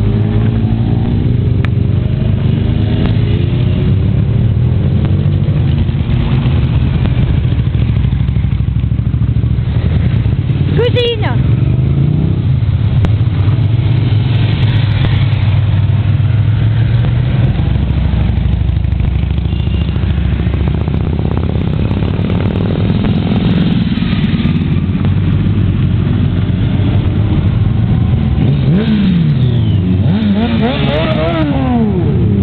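A long line of motorcycles riding past one after another, their engines running steadily, with the pitch sliding up and down as bikes go by.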